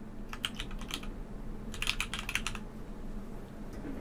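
Typing on a computer keyboard: a short run of keystrokes about half a second in, then a longer, faster run around two seconds in.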